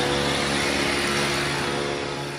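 Backpack motorized mist sprayer running steadily, its small engine humming under the hiss of the air blast as it sprays disinfectant mist.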